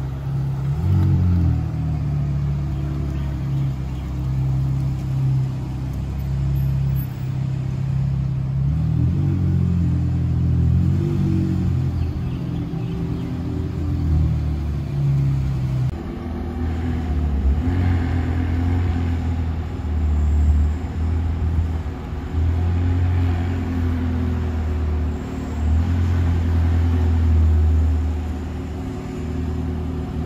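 McLaren supercar's twin-turbo V8 running at idle and low speed, a deep steady rumble with a few light blips of the throttle.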